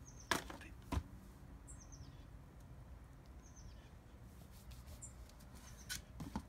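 Two sharp snaps about half a second apart near the start, from hardback books being handled as their covers are pulled off, over a faint steady outdoor background with a few short, high bird chirps.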